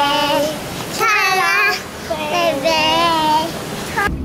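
A young child's high voice in about four drawn-out, wavering sing-song notes, like singing mixed with giggling.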